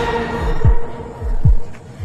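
Dramatic suspense cue: a held droning tone with two deep, pitch-dropping booms about 0.8 seconds apart, in the manner of a heartbeat effect.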